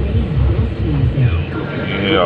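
Moving car heard from inside the cabin: steady low engine and road rumble, with voices mixed in.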